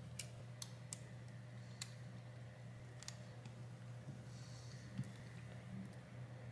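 Faint, scattered light clicks and ticks of a thin metal pick against a tablet's internal parts as a flex cable connector is worked into its socket, over a low steady hum.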